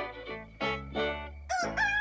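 Plucked-string music cue, then about one and a half seconds in a rooster starts to crow, rising into one long held note.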